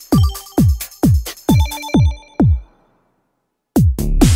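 Electronic dance track: a kick drum that drops in pitch, about two beats a second, under short high synth bleeps. About two-thirds in it cuts to a second of silence, then two quick hits bring the beat back near the end.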